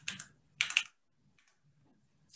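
A few computer keyboard keystrokes: a short clatter of keys a little over half a second in, then one faint tap in the middle.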